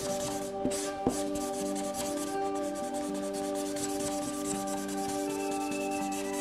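Grey felt-tip marker rubbing on paper in rapid back-and-forth colouring strokes, over soft background music with sustained tones.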